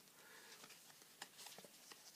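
Near silence, with a few faint light clicks from stiff paper stickers being handled and shuffled.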